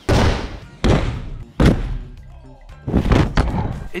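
A series of four heavy thuds, each sudden and dying away over about a second: one at the start, one just under a second in, one at about a second and a half, and one at about three seconds.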